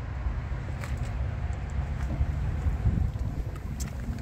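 Low, steady outdoor rumble with wind buffeting the microphone.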